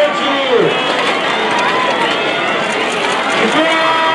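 A crowd of many voices calling out and shouting over one another as beans are thrown to them from the stage, with a few long falling cries standing out about half a second in and near the end.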